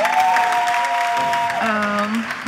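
Audience applauding, with music holding a long two-note chord over the clapping that gives way to a single lower held note near the end.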